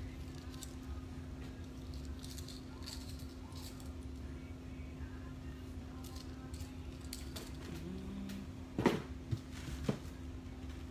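Faint clinking and rustling of costume-jewelry necklaces being handled and slipped into drawstring bags, over a steady low electrical hum, with a couple of louder knocks near the end.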